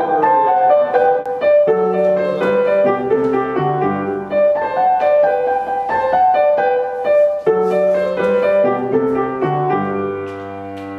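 Bergmann grand piano played solo: a classical recital piece with a melody moving over lower bass notes, played continuously.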